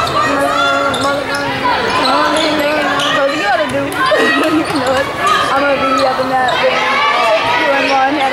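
A basketball dribbled and bouncing on a gym's hardwood court during play, with voices of spectators in the stands going on throughout in the echoing gymnasium.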